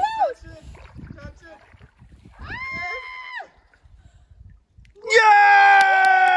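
A young child's voice crying out while wading into icy lake water: a short call, a held cry about halfway, then about five seconds in a long, loud scream that slides slightly down in pitch. Faint splashing between the cries.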